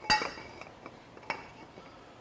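Metal clinks as aluminum tubing is handled and set against a steel bench vise. There is a sharp clink with a brief ring right at the start, then a lighter clink about a second later.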